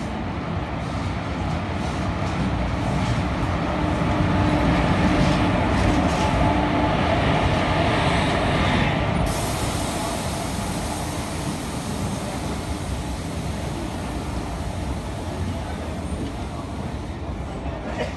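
WAG-5 electric locomotive and its coaches rolling past a station platform as the express train draws in, a steady rumble of wheels on rail that swells as the locomotive goes by, with a hum in it, then eases as the coaches slow. A thin high hiss comes in about nine seconds in.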